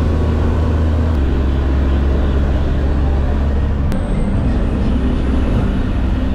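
Bus engine running with road noise, heard from inside the moving bus: a loud, steady low drone whose note changes about four seconds in.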